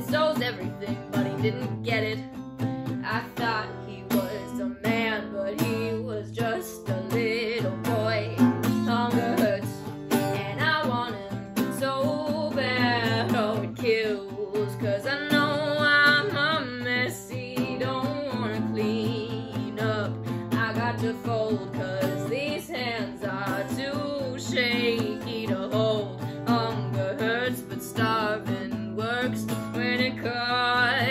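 A woman singing over a strummed acoustic guitar.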